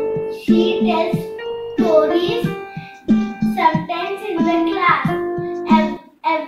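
A young girl singing a song over instrumental accompaniment with held, steady notes; the singing stops near the end.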